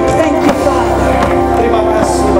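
Live worship music from a stage band: sustained chords with a singer's voice over them and a few percussive hits about half a second in.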